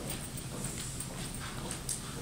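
Footsteps of two people walking across a stage floor: a series of uneven taps, one sharper step near the end.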